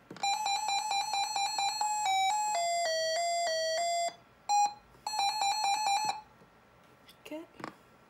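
Reecom R-1650 weather alert radio sounding its alert test. It gives a run of rapid electronic beeps, then a short tune of stepped notes that falls in pitch about two seconds in, then rapid beeping again. The beeping stops about six seconds in.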